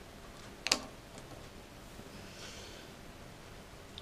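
A single sharp click a little under a second in, then a faint hiss of breath pushed out through the mouth as the burn of naga morich chili powder sets in.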